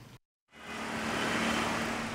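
Silence for about half a second, then steady street traffic noise from light road traffic fades in and holds.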